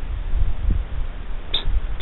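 Wind buffeting the microphone outdoors: a low, uneven rumble with no speech, and one short faint tick about one and a half seconds in.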